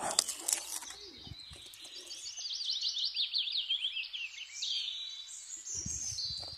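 A songbird singing a fast run of high chirps through the middle. It follows a loud rustling clatter in the first second, like dry leaves and phone handling.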